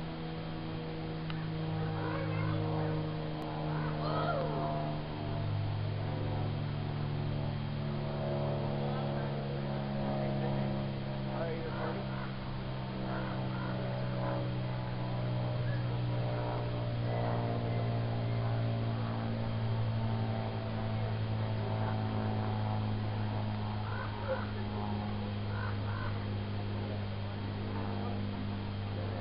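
Indistinct chatter of people, no words made out, over a steady low hum that shifts slowly in pitch, with short high calls scattered throughout.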